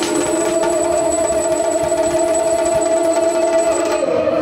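Yakshagana ensemble music: drums played over a steady drone, with one long note held through most of it.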